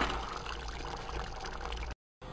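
A steel ladle stirring thick curry gravy in a pressure cooker pot: wet, irregular stirring noise. It cuts off abruptly just before the end.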